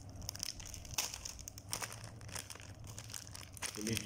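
Plastic bread-bun wrappers crinkling and crackling as they are held and moved about in the hands, in a quick irregular run of crackles.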